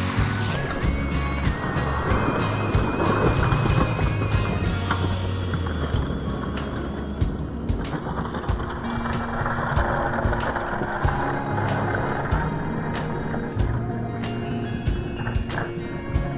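Background music with held notes and a busy beat, over the clicking rattle of small diecast cars rolling fast down a plastic race track.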